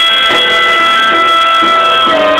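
Harmonica holding one long chord over strummed acoustic guitar, an instrumental break in a folk song.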